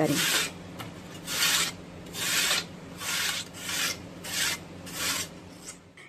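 A peeled raw potato being grated by hand on a stainless steel box grater: a rhythmic scraping rasp, about seven strokes, roughly one every three-quarters of a second.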